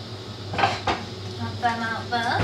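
White ceramic bowls clinking against each other and the worktop as a stack is set down on a kitchen counter: two sharp clinks close together a little over half a second in.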